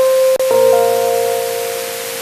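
Keyboard playing sustained chords. A single held note changes to a fuller chord about half a second in, which then fades slowly.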